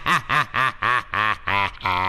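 A person's long laugh: a run of 'ha' pulses, about three a second, each rising and falling in pitch, that turns into one long held tone near the end.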